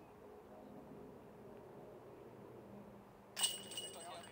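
Quiet open-air background, then about three and a half seconds in a disc golf putt strikes the metal basket chains: a sudden metallic jangle that keeps ringing.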